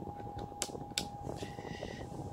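Two sharp clicks about half a second apart from a hand working the controls of a Mooer Black Truck multi-effects pedal. They sit over a steady background hum with a faint high tone, and a short rustle follows near the end.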